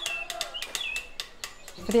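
Birds chirping in short high calls, with scattered sharp clicks, while a held note of choir singing fades out in the first second.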